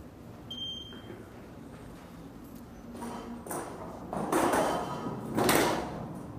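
A short, clear electronic beep about half a second in. Near the end come two loud rushing swishes, about a second apart, each lasting about half a second.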